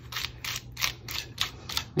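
Small stiff-bristled brush scrubbing over die-cut cardstock on a foam pad in quick, even strokes, about five a second, pushing the tiny cut-out hearts and dots out of the stencil.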